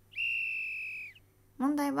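A single high-pitched electronic beep, one steady tone held for about a second that dips slightly as it cuts off. It is a sound effect cueing the end of the quiz questions.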